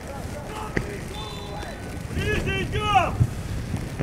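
Open-air football pitch ambience: a faint steady background with short shouted calls from players between about two and three seconds in.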